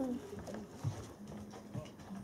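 A large dog's footsteps, its claws clicking faintly on a hard floor as it walks away. A steady low hum sets in a little past halfway.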